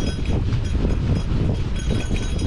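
Gravel bike rolling fast downhill on a dirt singletrack: a steady low rumble of tyres on the trail, broken by irregular rattles and clatter as the bike jolts over bumps.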